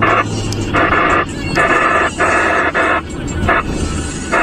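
Two-way radio giving short bursts of crackly, garbled transmission, over a steady low engine hum inside a moving car.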